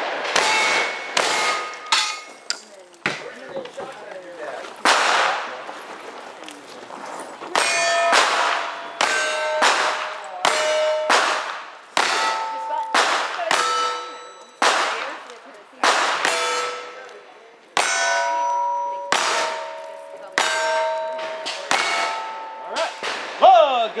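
A lever-action rifle and then a single-action revolver firing in a quick string of about two dozen shots, each shot followed by the ringing clang of a struck steel plate target.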